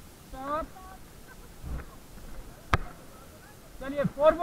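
Short snatches of people's voices calling out on a raft drifting on calm river water, with one sharp knock about three-quarters of the way through.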